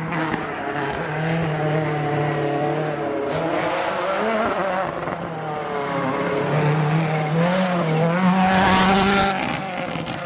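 Rally car's turbocharged four-cylinder engine at full throttle, its note climbing and dropping several times with gear changes and lifts. It grows loudest about nine seconds in as the car passes close.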